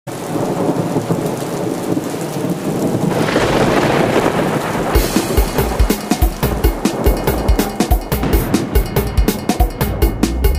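Steady hiss of rain with a roll of thunder swelling about three seconds in. Around five seconds a calypso band comes in with a quick, even beat.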